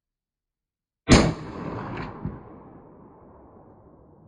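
A single rifle shot from a Husqvarna 1900 chambered in 9.3x62 firing a 270-grain bullet, a sharp loud crack about a second in, followed by a long fading echo.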